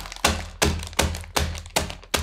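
The base of a drinking glass pounding a packet of sweets against a tabletop to crush them. It makes a steady run of sharp knocks with a dull thud under each, about three a second.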